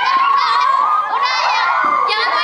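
A group of teenage girls shouting and shrieking together, many high voices overlapping loudly without a break.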